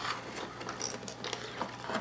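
Faint scattered clicks and scratches from a large hermit crab in a conch shell, its legs and claws moving against the shell and the hand holding it, over a steady low hum.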